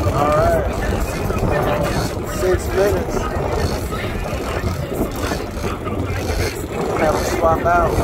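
Steady, loud boat and wind noise on open water, with short voiced calls near the start, a couple of seconds in, and again near the end.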